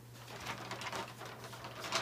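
Faint rustling and light knocks of a vinyl record being handled with its paper inner sleeve and cardboard jacket, over a steady low hum.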